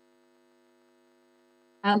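Faint steady electrical hum, a set of even tones with no speech over it. A woman's voice comes back in near the end.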